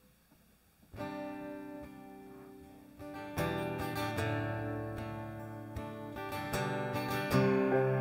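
A strummed acoustic guitar chord rings out about a second in, after a brief near-silence. About two seconds later the rest of the worship band joins in and the intro builds, growing louder.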